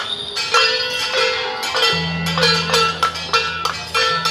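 Procession percussion: small gongs struck over and over, about three ringing metallic strikes a second. A steady low hum comes in about halfway through.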